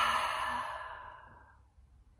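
A woman's big, deep breath out, fading away gradually over about a second and a half.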